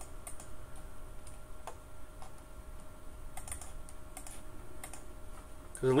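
Scattered clicks of a computer keyboard and mouse, coming singly and in small clusters with gaps between, over a faint steady hum.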